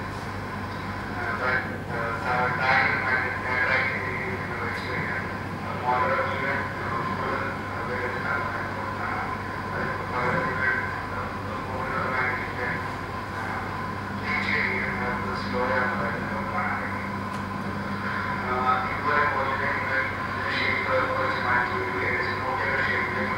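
Indistinct voices talking over a steady low hum, with a faint steady tone running under them.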